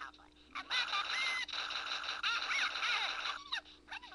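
Shrill, squawking voice-like cries that rise and fall in pitch, a cartoon figure's screams in a stick-figure animation. They run in one dense stretch beginning about a second in and stopping shortly before the end.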